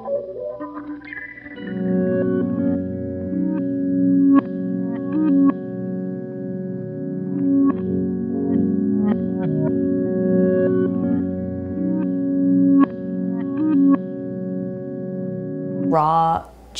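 Electric guitar music played through effects: sustained, layered chords come in about two seconds in and hold steady, with short plucked notes picked over them.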